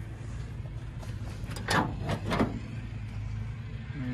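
The steel cab door of an old GMC truck being opened: a few short latch and hinge clicks and scrapes about halfway through, over a steady low background rumble.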